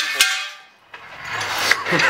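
Steel jack stand set down on a concrete floor with a clang that rings briefly, followed by a second, smaller knock. Someone laughs near the end.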